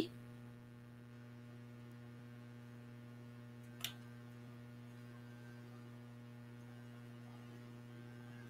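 Low, steady electrical mains hum in the recording, with one faint click about halfway through.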